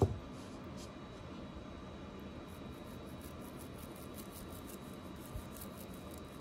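A single knock right at the start, then a toothbrush scrubbing toothpaste over an 18K yellow gold diamond ring: faint, quick brushing strokes from about two and a half seconds in.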